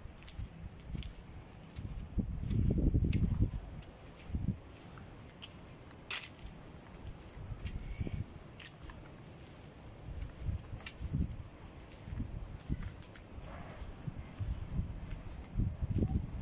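Outdoor ambience with wind gusting on the microphone in uneven surges, the strongest about two to three and a half seconds in. Footsteps and scattered light clicks are heard, with a faint steady high tone underneath.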